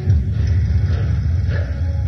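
A deep, loud rumble from a film soundtrack, starting with a sudden hit and churning on irregularly, with faint music beneath.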